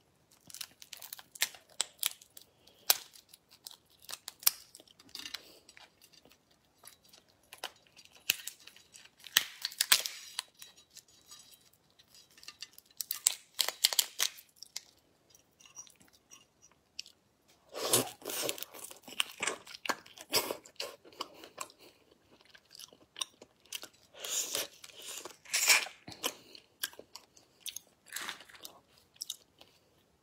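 Langoustine shells cracked and peeled by hand, mixed with crunchy chewing: a dense run of crisp crackles and clicks, louder in clusters about two thirds of the way through and again near the end.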